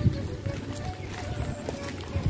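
Footsteps of someone walking on a wet asphalt road, a dull thud every fraction of a second, over faint distant music with a held sung or played note and a thin steady high tone.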